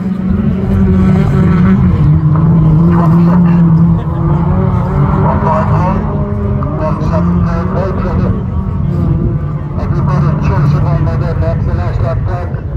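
Several autograss racing cars' engines running hard at high revs as they race around a dirt track, the engine notes shifting up and down in pitch as they accelerate and lift off.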